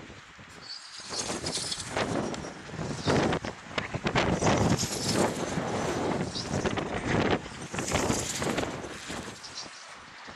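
Wind buffeting the microphone: a rough rushing noise that swells and fades in irregular gusts.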